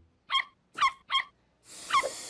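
A cartoon dog yapping: three short, high yips in the first second, then a hissing noise that builds near the end with one more yip.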